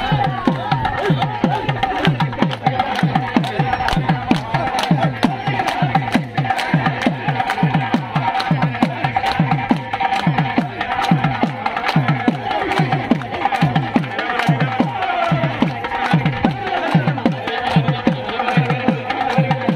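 Devotional bhajan music: a double-headed hand drum beats a fast rhythm of low strokes that drop in pitch, with hand claps and sharp clicks over it, while a group sings.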